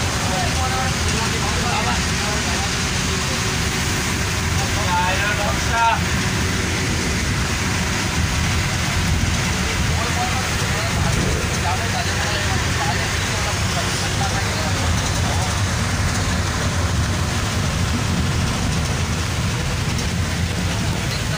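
Steady rumble of a moving bus heard from inside the cabin: engine and road noise, with faint passenger voices in the background.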